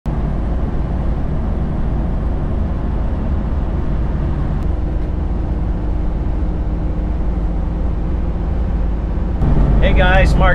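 Steady road and engine rumble inside the cab of a gas Class A motorhome cruising on a highway, with no changes in pace.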